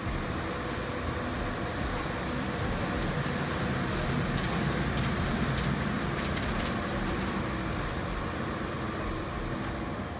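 Steady rush of road traffic, swelling a little around the middle of the stretch and easing off toward the end.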